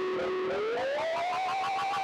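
Two acoustic guitars run through effects pedals in an instrumental passage: a held, effects-processed tone slides up in pitch about half a second in and then wavers, over a quick pulsing pattern of repeated notes.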